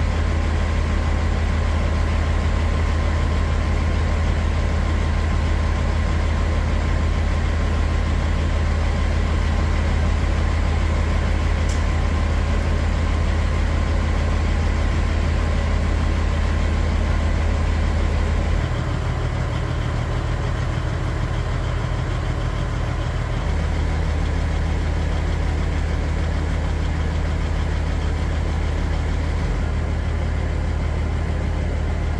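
Steady low rumble of an idling semi-truck diesel engine while diesel is pumped through the nozzle into the tank. The low tone shifts slightly about two-thirds of the way through.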